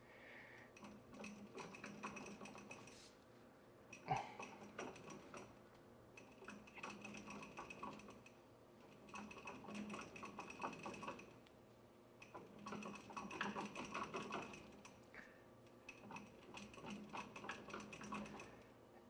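Faint rapid clicking and ticking in bursts of a second or two with short pauses, as a wheel is turned slowly by hand on a wheel stand.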